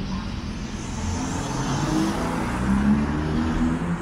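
Road traffic on a city street: a motor vehicle's engine running close by over a steady low rumble, growing louder from about a second in and loudest near the end.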